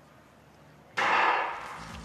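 Starting gun fired once, about a second in, signalling the start of a track race; the bang rings on for about half a second.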